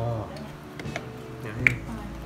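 A single sharp click with a short high ring, about one and a half seconds in, from a glass fish-sauce bottle being handled to season a bowl of noodle soup.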